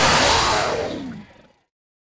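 A loud, noisy cartoon sound-effect burst that dies away to dead silence about a second and a half in.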